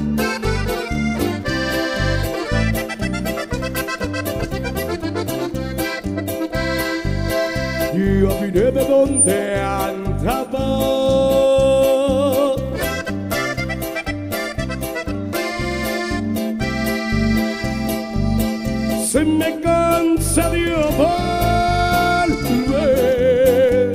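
Live norteño band music led by a button accordion, playing an instrumental passage over a steady, even bass beat; the accordion holds long wavering notes near the middle and again near the end.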